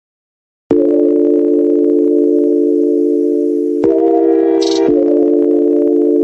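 Silence, then under a second in a loud, steady electronic chord of held tones starts abruptly, shifting to another chord near the middle and back again a second later: the opening of the next funk track.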